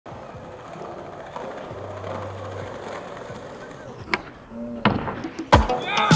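Skateboard wheels rolling on street asphalt with a steady rumble, followed by a few sharp clacks of the board near the end, the last one the loudest.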